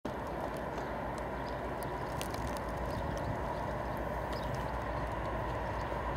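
Class 56 diesel locomotive approaching at a distance, its engine a steady low rumble with a faint even pulse, with light scattered clicks over it.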